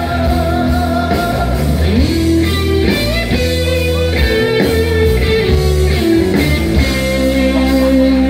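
Live rock band playing: electric guitars with held, bending notes over bass and drums.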